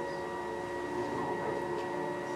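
Soft background music of held, sustained chords from a video's soundtrack, played back over loudspeakers in a room.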